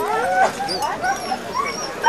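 A team of harnessed Siberian husky sled dogs yelping and whining all together, many overlapping voices rising and falling in pitch, as they strain to run at the start line.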